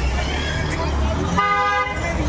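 A motorcycle horn gives one short toot, about half a second long, in the second half, over street crowd chatter.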